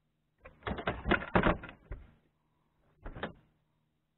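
A large catfish and its landing net knocking and rattling against the boat's deck as the fish is handled: a rapid clatter of knocks lasting under two seconds, then a shorter burst about three seconds in.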